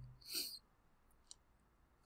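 Near silence, with a short breath near the start and one faint, sharp click a little past halfway.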